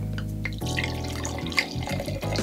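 White wine being poured from a glass bottle into a stemmed wine glass: a steady trickle of liquid filling the glass.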